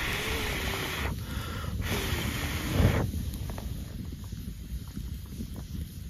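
Wind noise on the microphone in two gusts over the first three seconds, then a small wood campfire crackling faintly over a low rumble.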